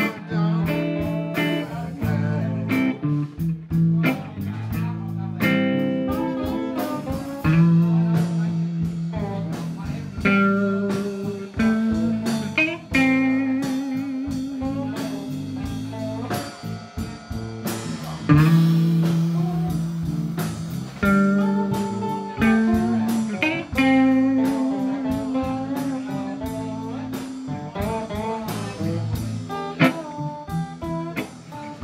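Live blues band playing an instrumental passage: guitars with bass guitar and drums.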